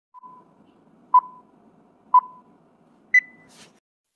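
Film countdown leader sound effect: short electronic beeps once a second, the last one higher in pitch, over a faint low crackle.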